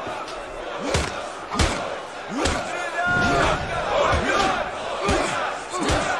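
A crowd of men shouting and yelling around a fight, with several heavy blows landing as thuds, the first two close together about a second in and another near the end.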